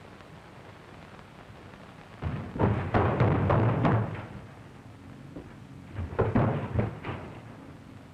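Two loud, rough bursts of sound from the caged ape: one about two seconds long starting about two seconds in, and a shorter one about six seconds in.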